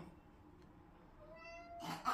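A house cat's single short meow, rising slightly in pitch, about a second and a half in: the cat crying for food at its bowl.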